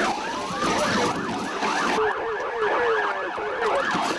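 Police sirens in a fast yelp, pitch rising and falling several times a second. A second, lower siren sweeps more slowly in the second half.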